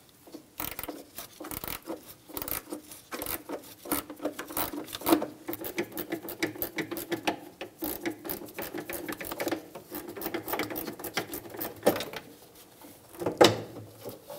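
13 mm ratcheting box-end wrench clicking rapidly in short back-and-forth strokes as it backs out a bolt, with one louder knock near the end.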